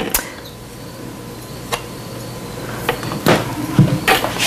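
A few short, light knocks and clatters of a spatula against a plastic food-processor bowl, spaced out over a few seconds, the louder ones near the end, with a low steady hum underneath.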